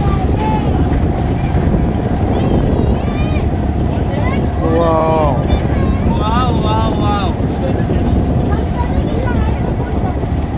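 Motorboat engine running steadily, with wind on the microphone. Indistinct voices talk over it, most clearly about halfway through.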